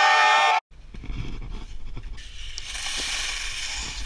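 A meme-style air horn sound effect blares and cuts off abruptly about half a second in. Then comes the steady rushing noise of skis sliding on snow, with wind on the ski-mounted camera, growing louder about two seconds in.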